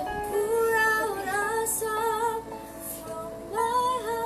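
A woman and a girl singing a slow worship song together, in long held notes. A new phrase comes in louder near the end.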